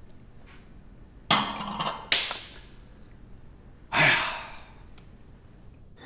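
A man's loud breathy exhalations: a satisfied 'ahh' after a swallow of wine about a second in, a shorter one just after, and a longer sighing 'aiya' about four seconds in.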